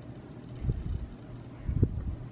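Low, muffled thumps and rumble from a damp makeup sponge being dabbed against the face while blending foundation, the two strongest thumps about a second apart.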